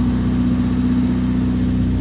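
1995 Rover Mini Cooper 1.3i's 1275 cc A-series four-cylinder engine idling steadily.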